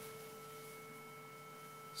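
Faint, steady test tone: a sine wave run through a Maxon OD808 overdrive pedal with the drive partly up. It is soft-clipped, so it carries odd-order harmonics as fainter overtones above one steady pitch.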